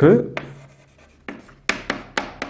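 Chalk writing on a blackboard: a handful of short, sharp taps and scratches as letters are written, about four strokes mostly in the second half.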